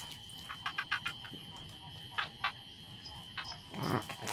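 Frogs in a rice field giving short croaks, a quick cluster of them about half a second to a second in and a few single ones later, over a steady high-pitched drone of night insects.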